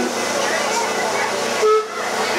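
Steady chatter of people, with a brief loud horn toot near the end that cuts off suddenly.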